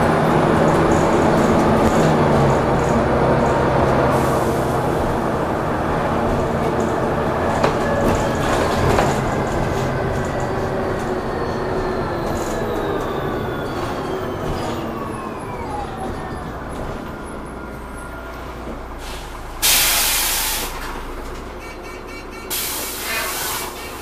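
DAF DB250LF/Plaxton President single-deck bus running on the road, then slowing, its engine and transmission whine falling steadily in pitch. Two loud air hisses follow near the end, typical of the air brakes as the bus pulls up at a stop.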